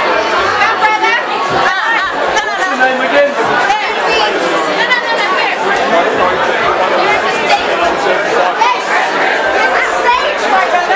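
Crowd chatter in a packed nightclub: many people talking over one another in a steady, loud din of overlapping voices.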